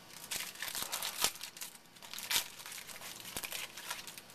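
Trading-card pack wrapper being torn open and crinkled in the hands: a run of crackles, with two sharper snaps about a second in and just past two seconds.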